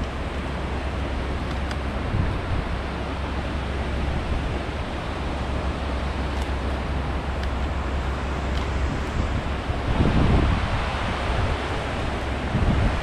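Steady rush of a shallow river running over stones, with wind rumbling on the microphone and a gust swelling about ten seconds in.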